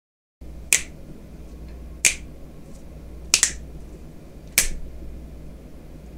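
Four sharp clicks, about a second and a quarter apart, the third one doubled, over a steady low hum that starts abruptly after a moment of dead silence.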